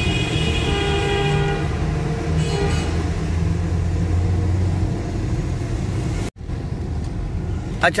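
Road noise and engine rumble heard from inside a moving car, with a vehicle horn held for about the first two seconds and tooted once more briefly just after. The sound drops out for an instant near the end.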